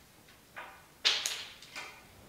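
Leafy plant stems being handled and worked by hand: three short crisp rustles, the loudest starting sharply about a second in and fading quickly.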